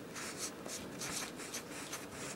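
Marker pen writing on newspaper, a run of short scratchy strokes as letters are drawn.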